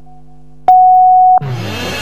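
Countdown leader beep: over a steady low drone, one long electronic beep sounds about two-thirds of a second in, marking the end of the count. The programme's opening theme music then starts with a sweep in pitch.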